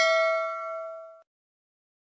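Notification bell sound effect: a single bright bell ding ringing out and fading away, ending about a second in.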